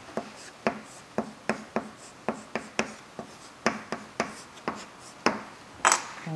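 Chalk writing on a blackboard: a kanji character being written stroke by stroke, heard as a quick, irregular series of short taps and scrapes, about three a second.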